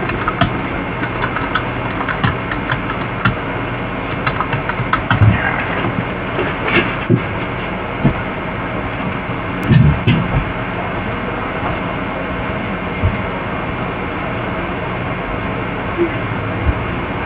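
Steady low hum under a hiss, with a few short knocks and thumps, the loudest about five seconds in and again around ten seconds in.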